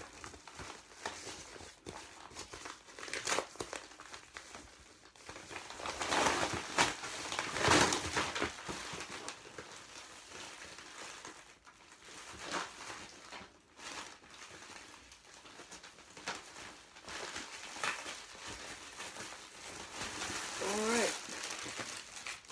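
Brown paper mailing envelope being handled and rummaged, its paper and the plastic packaging inside crinkling and rustling in irregular bursts, loudest about six to eight seconds in.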